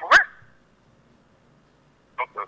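A dog barks once, sharply, in the first moment, heard through a caller's telephone line.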